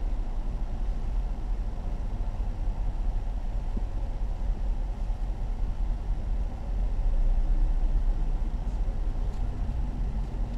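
Steady low rumble of a car heard inside its cabin, its engine running while it waits or creeps forward, swelling a little about seven seconds in.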